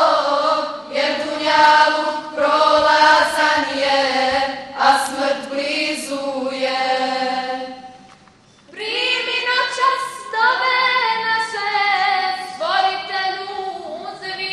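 A group of young women singing an ilahija, a Bosnian Muslim devotional song, unaccompanied. The singing pauses briefly about eight seconds in, then the next phrase begins.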